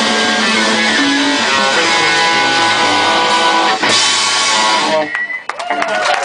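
Live rock band with two electric guitars and a drum kit playing the loud closing bars of a song, with a cymbal crash near four seconds in. The music stops about five seconds in, and scattered clapping and shouts from the audience follow.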